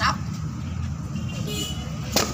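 Steady low rumble of road traffic, with a faint high tone about one and a half seconds in.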